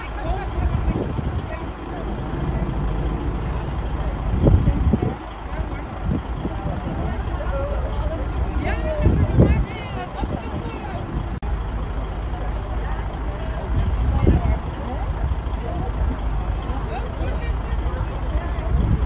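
Indistinct chatter of a group of people over a steady low rumble.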